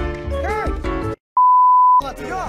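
Background music that cuts off about a second in, then after a moment of dead silence a single loud, steady, pure-tone beep of the kind used as a censor bleep in TV edits.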